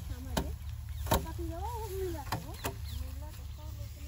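Bundles of harvested rice stalks beaten against a wooden plank to thresh the paddy by hand: a few sharp, irregularly spaced strikes, each a dry thwack.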